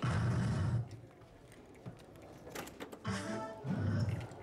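Electronic sound effects from a soft-tip darts machine: a loud jingle as the throw ends, then a second jingle about three seconds in as the machine switches to the next player.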